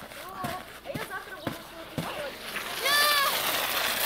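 A small round plastic sled scraping and hissing over packed snow, with children's voices around it and one loud, high-pitched child's call about three seconds in.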